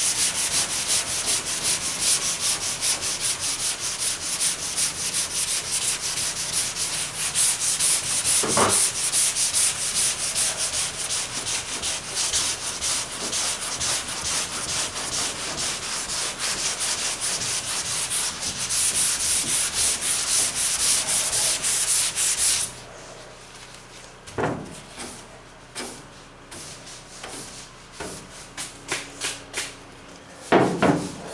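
Hand block sanding of epoxy primer on a car hood: fast back-and-forth rasping strokes of sandpaper on a sanding block, which stop abruptly about 23 seconds in. A few light knocks follow.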